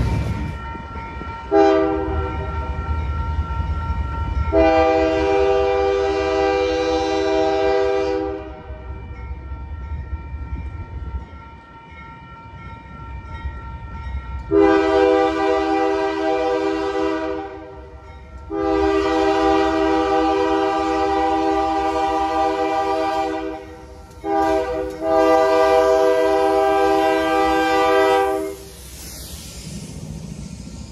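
Union Pacific diesel freight locomotive's multi-chime air horn: two long blasts, a pause, then long, long, short, long, the standard grade-crossing signal, as the train approaches. A low rumble of rolling freight cars runs under the horn.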